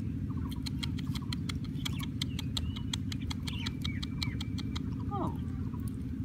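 Quick light clicks and rattles of a rusty wire-mesh cage trap as a hand works inside it, over a steady low rumble. A short falling squeak comes about five seconds in.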